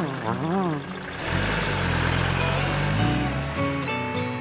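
A cartoon dog's wavering, whining howl for about the first second, then a van engine running as the van pulls away, about a second in until near the end, over background music.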